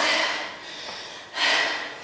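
A person breathing out hard through the nose or mouth: one short, breathy huff about a second and a half in.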